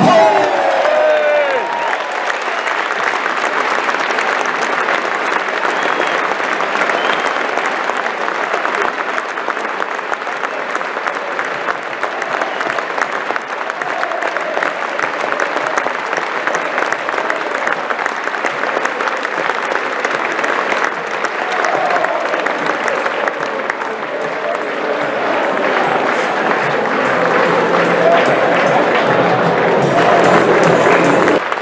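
A large stadium crowd applauding steadily, with voices mixed in, swelling a little near the end.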